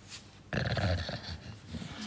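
English bulldog making a short, breathy grumbling vocal noise close to the microphone. It starts about half a second in, lasts about a second and trails off into quieter snuffles. The dog is impatient for his dinner.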